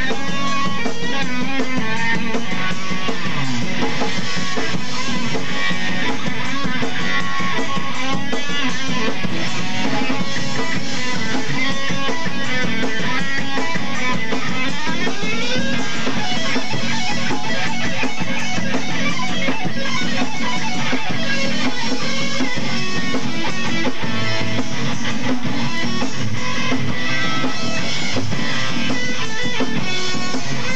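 Live rock band playing loud and steady: electric guitars, bass guitar and drum kit. The guitar slides in pitch about halfway through.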